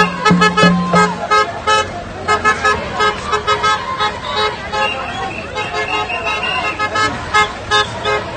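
Vehicle horns honking in rapid short toots, several at once in a rhythmic pattern, over the noise of a marching crowd.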